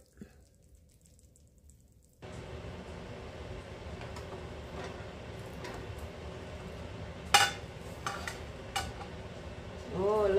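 A spatula cutting into a casserole in a glass baking dish and knocking against the dish and a ceramic plate as a portion is served: a few sharp clinks, the loudest about seven seconds in, over a steady low room hum. The first two seconds are nearly silent.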